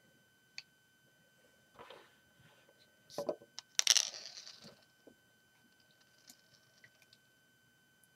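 A few light plastic knocks, then a sharper clatter with a brief rustle about four seconds in: LEGO minifigures on a brick plate being set down on a display stand.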